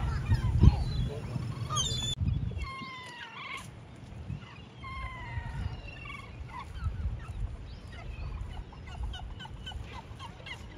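Gulls calling repeatedly, a run of drawn-out cries that fall in pitch. Wind rumbles on the microphone for the first two seconds.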